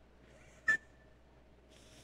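A quiet pause broken once, about two-thirds of a second in, by a single short sharp click followed by a brief high ringing tone, with a faint breath near the end.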